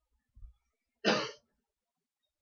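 A person coughing once, a short sharp burst about a second in, preceded by a faint low thump.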